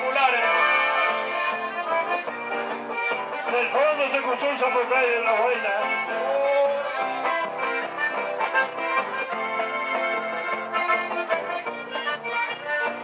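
Live chamamé dance music led by accordion, playing continuously, with a voice over it at times.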